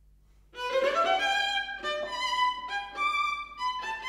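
Solo viola bowed, coming in about half a second in with a run of quick, separate notes.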